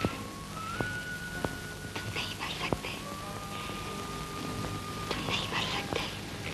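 Soft film score: a single pure high note held long and stepping to a new pitch every second or so, over a woman's breathy whispering in short bursts. The old soundtrack adds a steady hiss and a few sharp clicks.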